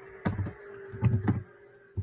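Computer keyboard typing: a handful of quick keystrokes, over a faint steady tone that fades out near the end.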